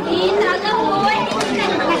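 Several people talking over one another, with laughter.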